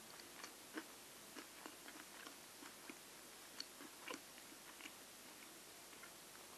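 Faint, close-miked chewing of homemade dim sum dumplings: soft, irregular wet mouth clicks and smacks.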